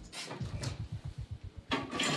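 Handling sounds at an undercounter refrigerator as a small sensor is put inside: a run of soft low knocks, then a louder knock near the end.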